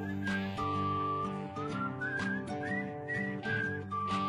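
Background music: a whistled melody with short sliding notes over a steady accompaniment of held chords and plucked notes.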